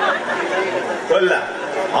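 Speech only: a man talking into a microphone over loudspeakers, with other voices chattering behind him.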